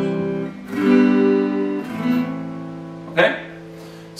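Acoustic guitar strummed one chord at a time, each chord left to ring, with new chords struck about a second and a quarter apart and the sound fading over the last couple of seconds. The chords belong to the F, C, G, A minor chorus progression.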